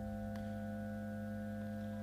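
A sustained musical drone of several steady, unchanging tones, low and middle pitched, held without a break, with a faint tick about a third of a second in.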